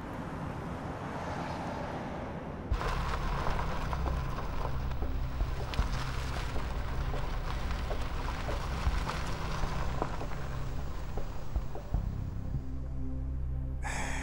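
Steady traffic and car noise with a low hum underneath, stepping up louder nearly three seconds in.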